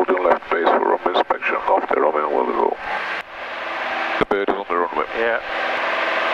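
Air traffic control radio speech, thin and band-limited as heard through a pilot's headset, with a short stretch of radio hiss between transmissions about three seconds in and a click as the next one keys in.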